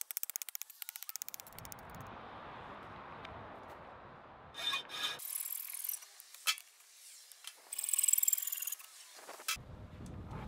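Scrap copper pipe being bent and worked by hand over an anvil and in a bench vise, to break it up for melting. A rapid run of scratchy clicks comes first, then a steady rasping rub for a few seconds, then scattered clicks and a brief scrape near the end.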